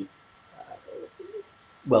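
Faint cooing of a pigeon: a few short, low coos starting about half a second in.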